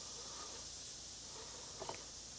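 Steady high-pitched chorus of summer insects, with a few faint clicks near the end.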